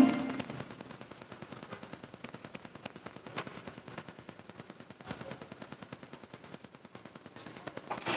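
The backing music ends right at the start, leaving faint, rapid, irregular clicking and crackling.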